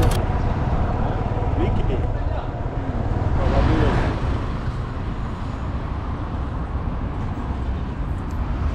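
City street ambience: steady traffic noise with low rumble, and indistinct voices of passers-by in the background.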